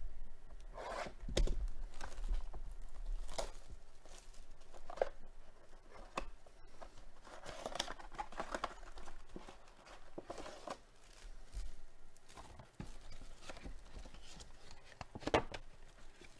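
Plastic shrink-wrap being torn and crinkled off a cardboard trading-card box, then the cardboard box opened and foil card packs handled. It comes as irregular rustles and scrapes, with a sharp rustle near the end.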